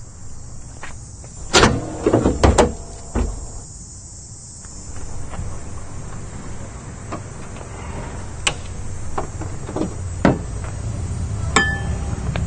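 A handful of sharp knocks and bangs about one and a half to three seconds in, then a few scattered clicks and a metallic clank with a short ring near the end, over a steady low outdoor rumble.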